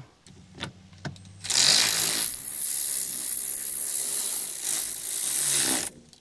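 A cordless electric ratchet runs a 10 mm bolt into the A-pillar gauge mount. A few light clicks come first as the socket is set on the bolt. Then the motor runs steadily for about four and a half seconds and cuts off suddenly near the end.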